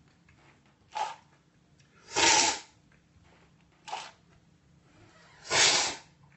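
Coffee being slurped hard from a cupping spoon to spray it across the palate for tasting: two loud, hissy slurps about three seconds apart, with shorter, quieter bursts between them.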